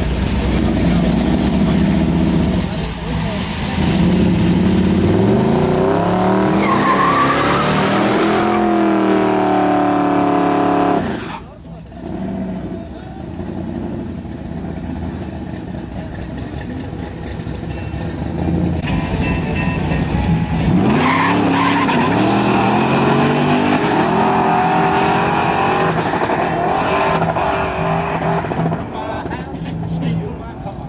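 Drag-racing Chevrolet Nova engine revving hard, its pitch climbing in repeated rising sweeps, with tyre squeal. The sound drops away suddenly a little before halfway, and the engine climbs in pitch again in the second half.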